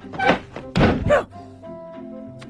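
A heavy thunk as a television set is put down on an armchair, about a second in, with straining grunts around it. Background music runs underneath.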